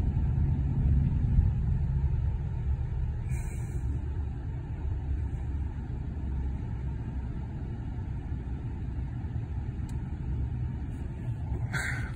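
Low, steady car road and engine rumble heard from inside the cabin, easing off somewhat after the first couple of seconds.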